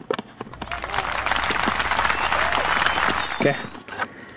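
Dense, continuous crackling rustle of plastic being handled from about half a second in until near the end, as a hand works a plastic organizer tray into a car's centre armrest storage box.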